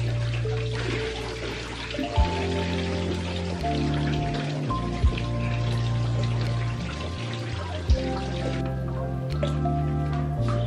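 Background music with held bass notes and a sharp beat about every three seconds, over water running and splashing into a bathtub.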